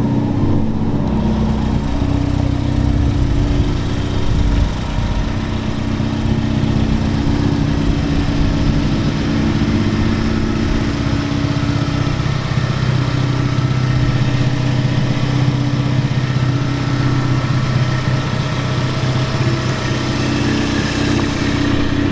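Ford Focus ST's turbocharged engine idling steadily.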